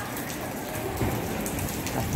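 Light rain falling: a steady patter with scattered ticks of single drops.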